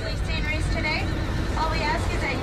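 People talking nearby, the voices indistinct, over a steady low rumble.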